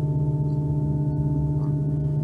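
Steady electronic drone from the dance's original score: a low held tone with several higher tones above it, unchanging.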